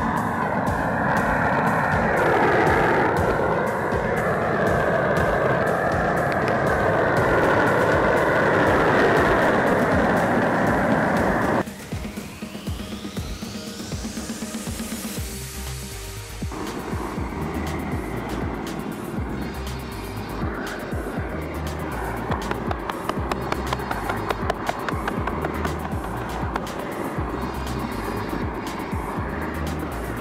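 A propane roofing torch burning with a steady roar, with music under it. About twelve seconds in, the torch sound cuts off suddenly and a rising sweep follows. Music with a steady low beat then plays to the end.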